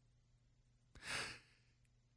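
One short breath taken in by a man close to a studio microphone about a second in, between stretches of near silence.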